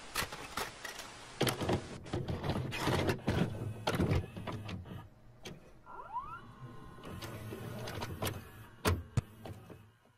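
Video cassette recorder mechanism loading and starting a tape, heard as a string of clunks and clicks over a faint hiss and a low motor hum. A short rising whine comes about six seconds in, and the sound fades out at the end.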